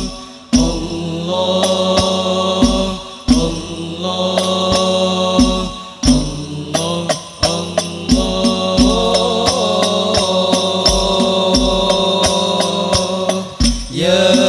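An Al-Banjari group singing sholawat in long held notes over occasional strokes of terbang frame drums. The voices break off briefly a few times between phrases.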